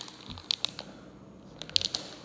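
Plastic soft-bait package crinkling as it is handled and opened. There are a few sharp crackles about half a second in and a quick cluster near the end.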